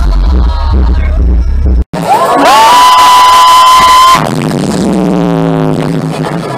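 Loud live concert music through a festival sound system: a song with heavy bass and a singer, cut off abruptly about two seconds in. Then a different, electronic dance track, where a high note slides up and holds for about two seconds before lower sweeps fall away.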